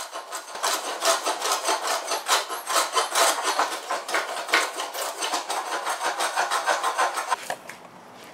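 Block plane shaving the surface of a wooden 2x4 to smooth out cut notches: a quick run of rasping strokes, several a second, that stop shortly before the end.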